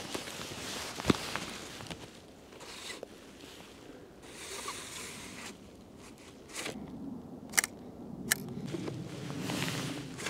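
Large format view camera being handled for an exposure: soft sliding and rustling as the film holder's dark slide is worked, with a sharp click about a second in and two sharp clicks close together near the end from the lens shutter and camera hardware.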